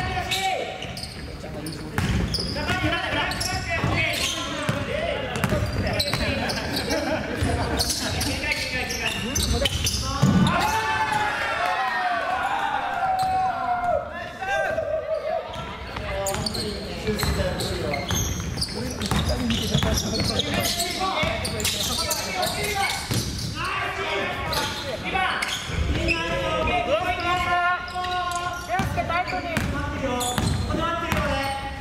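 Basketball bouncing on a wooden gym floor in play, with players' voices calling out, loudest about a third of the way in and near the end. The large hall makes it all echo.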